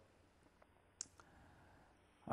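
Near silence with one short, faint click about a second in.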